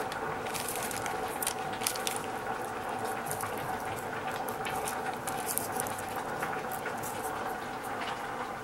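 Thin plastic bag crinkling in irregular crisp crackles as fingers pick moringa seeds out of it, over a steady background hiss.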